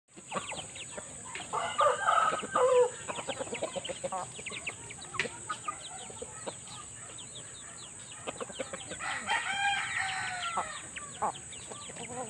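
Shamo and Asil gamefowl clucking and calling while they forage. A rooster crows twice, a short loud crow about two seconds in and a longer one around the tenth second. A steady high-pitched hum runs underneath.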